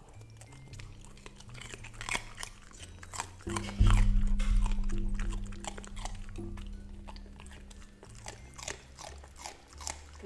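Golden retriever puppy crunching and chewing a piece of raw bell pepper, many short crisp crunches close to the microphone. Background music runs underneath, its low bass notes loudest about four seconds in.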